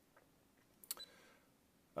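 Near silence, broken about a second in by a click from the Protimeter Hygromaster 2's keypad and a short high beep from the meter's key-press buzzer.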